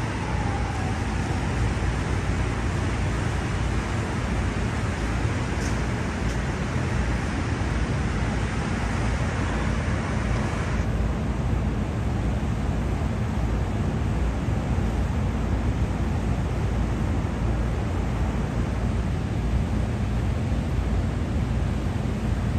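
Steady outdoor city din: an even, loud rumble with hiss over it, the hiss thinning out about eleven seconds in.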